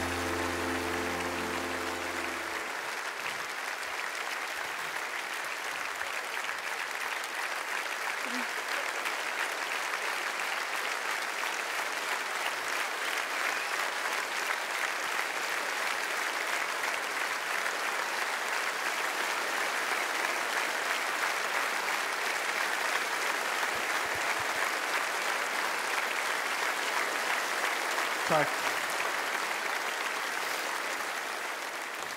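A large audience applauding steadily and at length, an ovation for a welcomed guest. A band's held chord ends a couple of seconds in, leaving only the applause.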